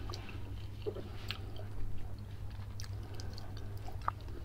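A person chewing food quietly close to the microphone, with a few faint mouth clicks, over a low steady hum.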